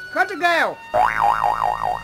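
A short falling vocal cry, then from about a second in a cartoon-style comic wobble sound effect whose pitch warbles up and down about five times a second, with a low hum beneath it.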